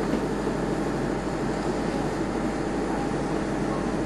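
Steady ventilation hum with a low underlying drone, unchanging throughout.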